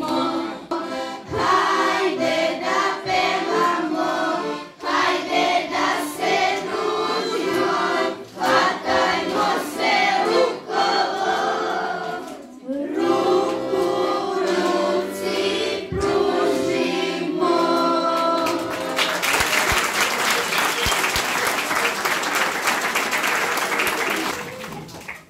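Children's choir singing a song with accordion accompaniment. The song ends a little before the last quarter of the span, and then an audience applauds steadily.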